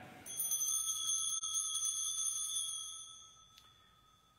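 A small altar bell struck once, ringing with a clear high tone that fades away over about three seconds. It is rung as the sign that the Eucharistic prayer has closed with its Amen.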